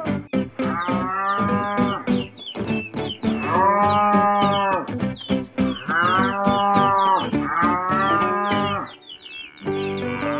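Cattle mooing: four long, drawn-out moos one after another, each about a second and a half, over background music with a plucked-string beat.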